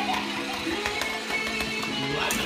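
Music with a guitar, its held notes running through.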